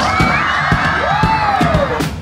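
A group of children cheering and shouting together, with one long whoop rising and then sliding down in the second half. Under it runs a music track with a steady drum beat.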